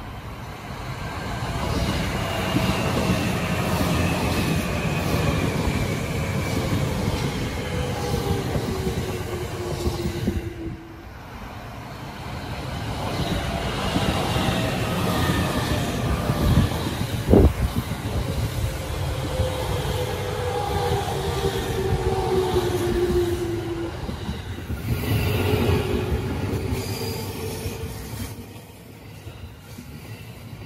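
JR 209 series electric train pulling in and rolling past close by, its traction motors whining in tones that fall steadily in pitch as it slows, over wheel-on-rail rumble. A single sharp knock comes near the middle.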